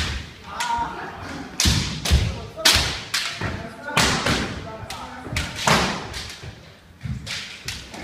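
Kendo sparring: a run of sharp cracks and thumps from bamboo shinai striking and clashing against armour and from bare feet stamping on the wooden dojo floor, about seven or eight at irregular gaps. Shouts from the fencers come between them.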